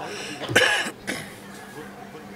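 A person coughing: one loud cough about half a second in, followed by a shorter, weaker one.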